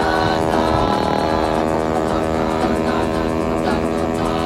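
Engine of a home-built 'Vespa extreme' tyre-stacked scooter running at a steady pitch, a continuous droning hum.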